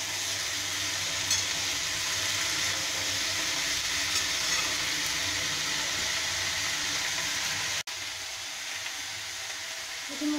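Chopped vegetables sizzling steadily in hot oil in a kadai, with a single click about a second in. The sound drops out for an instant near eight seconds, then the sizzling carries on a little quieter.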